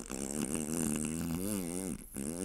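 A long, buzzing fart sound effect whose pitch wobbles up and down several times a second.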